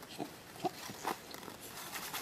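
A three-month-old baby making a few short grunts and small vocal noises in quick succession while holding his head up.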